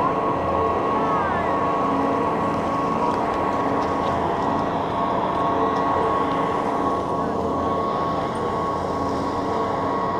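Chairlift station machinery running with a steady hum and a thin constant whine, with a couple of short squealing glides near the start.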